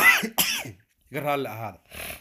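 A man speaking in Somali in short phrases, opening with a brief harsh throat clearing.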